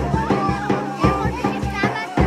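Folk dance music played live on a large double-headed drum beaten with a stick, at about two beats a second, and a reedy double-reed wind instrument playing an ornamented melody over a steady low drone, with children's voices mixed in.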